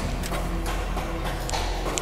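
Quiet background music over a steady low hum, with a couple of faint clicks near the end.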